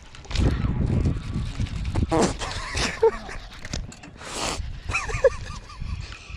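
Wordless excited yelps and gasps from an angler as a bass strikes and runs hard on his line, over a low rumble, with two short rushing bursts about two and four and a half seconds in.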